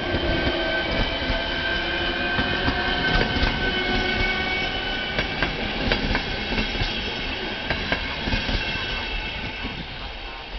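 ČD class 471 CityElefant double-deck electric multiple unit pulling away from a station. Its electric traction equipment gives several steady whining tones, while the wheels clatter over rail joints. The sound fades toward the end as the train draws away.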